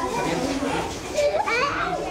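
Many schoolchildren chattering and calling out at once in a crowded classroom, with one child's voice rising in pitch about one and a half seconds in.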